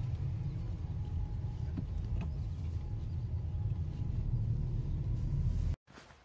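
Car driving, heard from inside the cabin: a steady low rumble of engine and road noise. It cuts off suddenly near the end.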